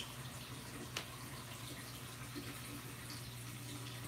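Saltwater aquarium's circulating water: a faint, steady rush of moving water over a low, steady hum, with a single faint click about a second in.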